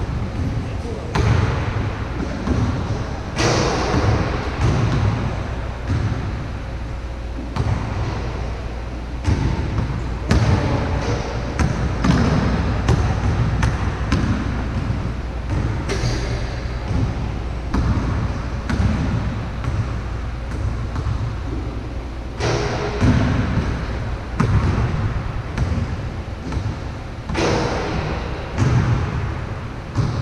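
A basketball being dribbled on a court, bounce after bounce, in runs with short breaks between them.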